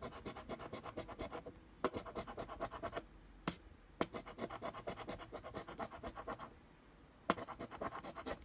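Metal scratcher coin scraping the coating off a paper scratch-off lottery ticket in quick back-and-forth strokes, about seven a second, in bursts with short pauses. One sharp tap about three and a half seconds in.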